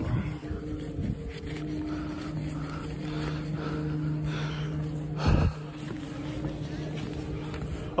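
A steady low mechanical hum, like a motor or fan running, holding one pitch throughout, with a brief loud thump about five seconds in.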